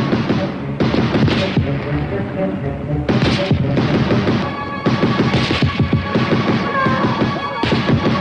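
Dramatic film score mixed with gunfire and explosions, with loud bursts of noise every second or two over a dense rattle of shots.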